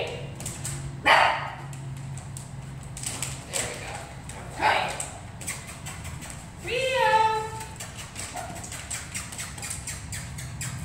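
A dog barking a few times in short bursts, with a longer, higher-pitched call about seven seconds in.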